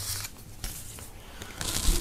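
Soft handling noise of a clear plastic sticker bag and its card header, with a brief crinkling rustle near the end.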